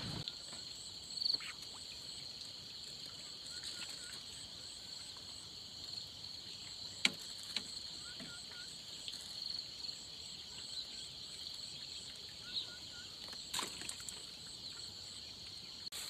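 Insects chirping in a steady high-pitched chorus, with a faster pulsing trill above it. A few sharp clicks break in, the loudest about seven seconds in and another shortly before the end.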